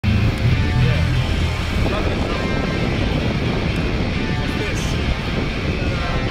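Skateboard wheels rolling over a concrete floor, a steady rumble, with music playing in the background.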